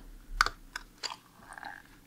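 Screwdriver working a tamper-proof screw in a plastic night-light housing: a few sharp clicks of the blade against the screw and plastic in the first second, then a faint short squeak.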